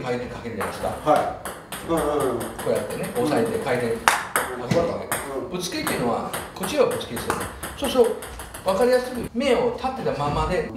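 A man talking, with sharp clicks of a celluloid-type table tennis ball against a rubber paddle and the table scattered through, the sharpest about four seconds in.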